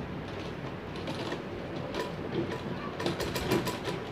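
Black domestic sewing machine stitching a seam in cloth: irregular mechanical clicking of the needle mechanism, with a quick run of clicks near the end.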